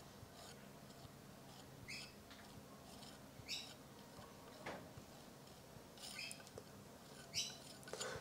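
Palette knife spreading oil paint across a canvas panel: faint, short scrapes every second or so, each lasting a fraction of a second.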